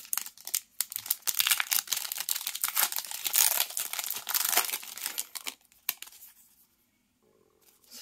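Pokémon trading-card booster pack's foil wrapper torn open by hand and crinkled as the cards are pulled out, a dense crackling that lasts about five and a half seconds.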